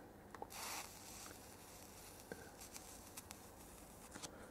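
Near silence: faint room tone with a brief, faint hiss about half a second in and a few faint ticks.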